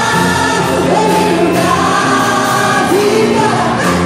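Gospel song performed live: a woman sings long held notes into a microphone over a small band with drum kit and keyboard, amplified through the hall's PA.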